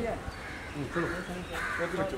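A crow cawing, harsh calls in the second half, over people talking in the background.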